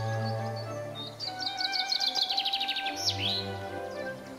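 Background music with long held notes, over a songbird singing: a fast run of short high notes in the middle, ending in a quick falling-then-rising flourish.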